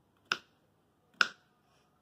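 Kitchen knife slicing through a cucumber and striking a wooden cutting board: two sharp chops about a second apart.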